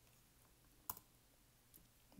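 Near silence broken by one sharp click from a computer about a second in, the typed password being submitted to a login form, and a fainter tick near the end.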